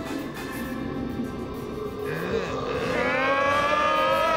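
Cartoon background music, then about three seconds in a loud, long bellowing call from a cartoon dragon-like creature, its pitch rising slightly.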